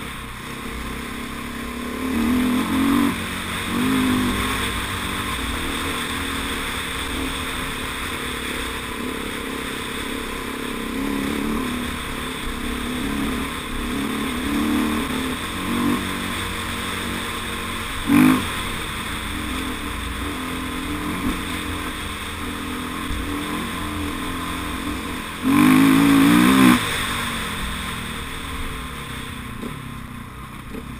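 Dirt bike engine running and revving up and down as it is ridden over a rough forest track, heard from the rider's helmet. There is a single sharp knock past the middle, and a loud burst of revs near the end.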